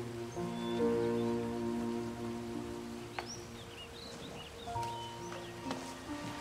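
Background score of slow, held string notes, with a few short bird chirps in the middle.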